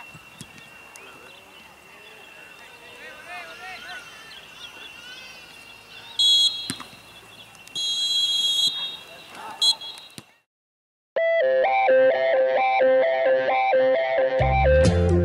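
A referee's whistle blown three times, short, long, then short, over faint shouts and field ambience. After a brief silence, upbeat guitar music starts.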